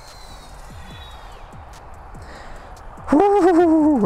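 Small FPV quadcopter on HQProp 76 mm 8-blade propellers, heard faintly as a high whine falling in pitch over a hiss. About three seconds in, a much louder wavering tone with a steady pitch cuts in.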